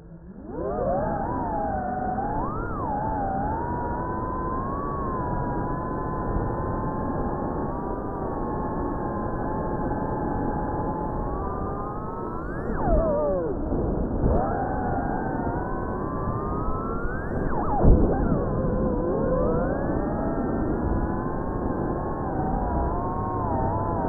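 The motors and propellers of a Cinelog35 ducted FPV cinewhoop drone spin up from rest about half a second in, then run as a whine whose pitch rises and falls with the throttle. It swoops sharply down and back up twice, about 13 and 18 seconds in, the second time loudest.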